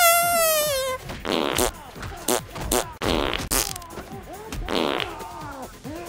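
Dubbed-in comedy fart sound effects. A loud, wavering fart about a second long with a slightly falling pitch comes right at the start, followed by three shorter buzzy farts, with sharp hits from the fight between them.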